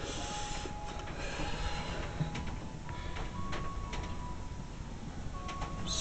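Steady electrical hum and hiss from a running kacher-driven coil setup, with faint high tones coming and going and a few light clicks.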